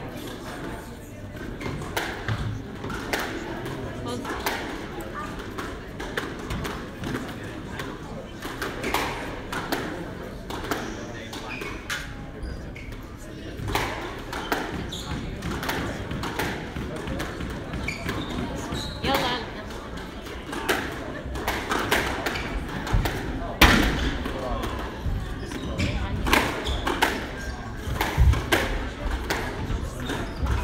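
Squash ball being hit: sharp echoing smacks of racket strikes and the ball hitting the court walls, sparse at first and coming thick and fast in a rally over the last third, with murmuring voices throughout.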